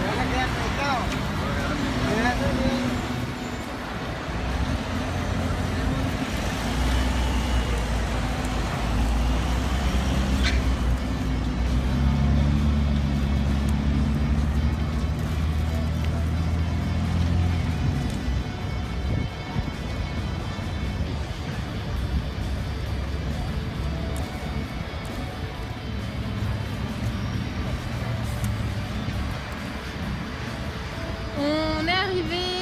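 City street traffic, with cars, vans and motorbikes passing, under light background music.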